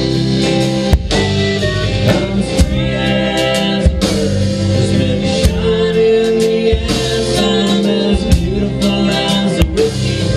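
A live country-rock band playing: electric guitar, pedal steel guitar, upright bass and a drum kit together, with drum hits cutting through the steady band sound.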